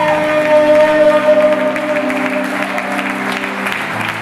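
A congregation applauding over sustained chords from the church band, held steadily and shifting to a lower chord near the end.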